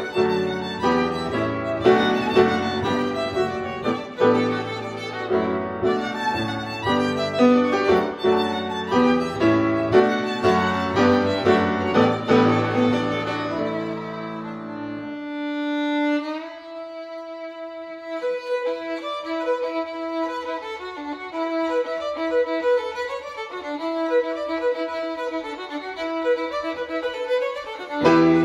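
Violin and grand piano playing a lively Irish fiddle tune together. About halfway through the piano drops out, and after a note sliding upward the violin carries on alone until the piano comes back in at the very end.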